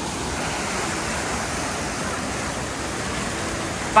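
White water rushing steadily down the shallow, sloping spillway of a weir, an even unbroken rush of water noise.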